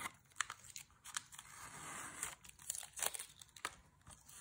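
Blue painter's tape being peeled off watercolor paper: a series of soft, quick crackling rips, with a longer steady peel in the middle.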